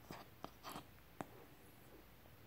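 A sleeping terrier's faint mouth and breathing noises: a few small clicks and one short breath in the near silence.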